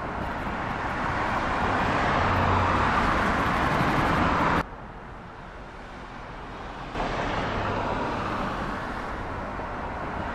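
Small motorbike engine and road traffic growing louder as the bike comes close, then cutting off abruptly about four and a half seconds in. Quieter street background follows, and traffic noise jumps back up about seven seconds in.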